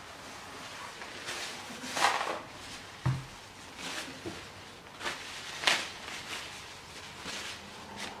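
Handling noises: a few short rustles, the loudest about two seconds in and near six seconds, and a single dull knock about three seconds in.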